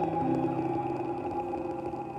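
Live jazz band holding a sustained chord over a low drone, the notes ringing steadily and slowly fading.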